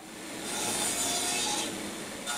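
Power crosscut saw cutting off pieces of a small pine strip: a steady hissing cut that swells in over about half a second and eases off near the end.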